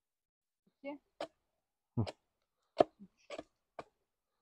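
A hatchet tapping a stick of kindling stood on a wooden chopping block: a handful of short, sharp, separate knocks about a second apart. The taps are light notching cuts that give the blade a grip so it won't slip when the stick is split.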